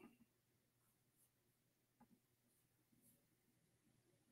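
Near silence: room tone, with one faint tick about halfway through.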